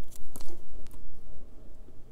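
A small paper checklist sticker being peeled and handled between the fingers: a few sharp crackly clicks and crinkles, the loudest about half a second in.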